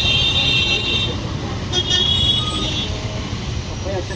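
Road traffic rumbling steadily, with a vehicle horn sounding in two long high-pitched blasts: the first stops about a second in, the second starts just under two seconds in and lasts about a second.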